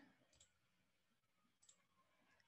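Near silence, with two faint computer-mouse clicks, one about half a second in and one near the end.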